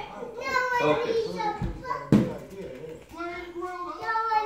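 Young children's voices chattering and calling out, with one sharp knock about halfway through.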